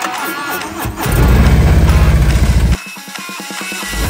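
Guitar rock music with a motorcycle engine running loud and low in rapid pulses for about a second and a half in the middle, then cutting off suddenly.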